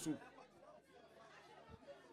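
A man's word into a microphone ends right at the start, followed by a pause filled with faint background chatter from the crowd.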